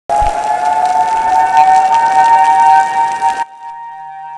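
Outdoor storm warning siren sounding a loud, steady two-note tone over a hiss of wind and rain, cut off abruptly about three and a half seconds in.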